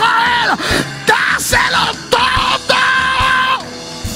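Loud, excited shouts of praise in a church, about four in a row that rise and fall in pitch, the last one long and held before breaking off near the end. Sustained background music plays under them.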